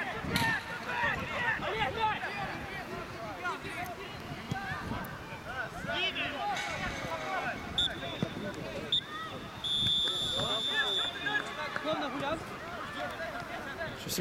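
Players' voices calling out across an outdoor football pitch, with a referee's whistle blown briefly about eight seconds in and again, longer and louder, around ten seconds in.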